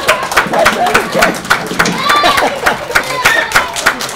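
A small audience clapping by hand, the separate claps plainly heard, several a second, with voices mixed in.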